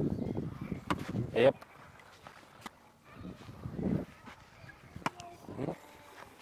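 A short spoken "ja", then a quieter stretch with soft voices, broken by a few short, sharp knocks of a tennis ball struck by a racket.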